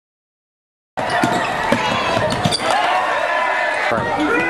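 Silence for about the first second, then the sound of a basketball game in a gym: a basketball dribbling on the hardwood floor amid the voices of players and spectators.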